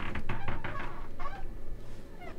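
A woman giggling in short breathy bursts.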